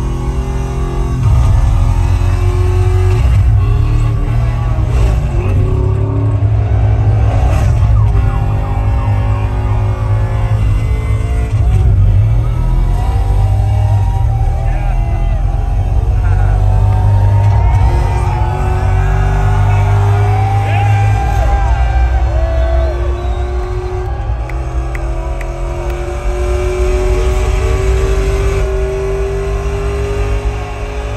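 Car engine sound effects from a concert's intro film, played loud over a large outdoor PA: an engine revving and accelerating, its pitch climbing in long slow sweeps over a heavy low rumble.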